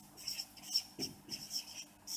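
Whiteboard marker squeaking on the board in quick, short, high-pitched strokes, several a second, as figures are written.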